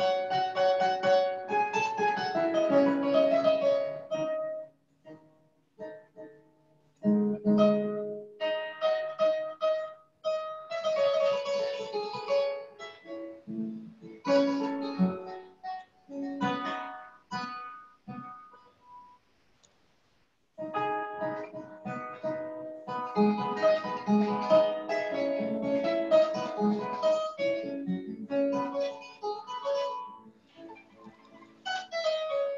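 Kora, the West African harp, played solo: quick runs of plucked notes in phrases that stop twice, briefly about five seconds in and for about two seconds around eighteen seconds in.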